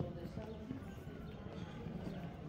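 Faint voices of people talking, with footsteps on stone paving.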